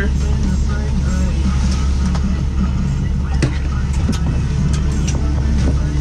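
A steady low motor hum that holds an even pitch throughout, with scattered faint clicks over it.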